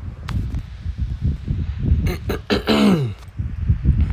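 A person clearing their throat over a steady low rumble, with a short vocal sound that falls steeply in pitch about three seconds in.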